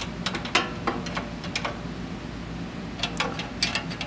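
Steel wrench clicking and scraping against the jam nuts and bracket of a pedal's cable adjuster as the nuts are tightened against each other. The light metallic clicks come in short clusters, with a pause of about a second near the middle.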